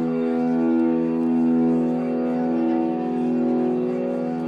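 Ambient drone music played live: one sustained chord of many steady tones is held throughout, swelling and ebbing slowly in loudness.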